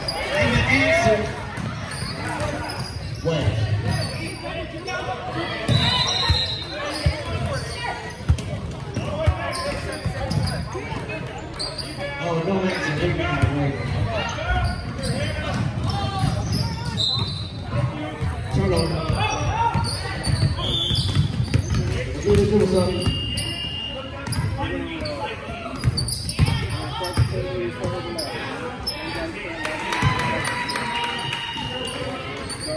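A basketball bouncing on a gym's hardwood floor, with players and spectators talking and calling out, echoing in a large hall.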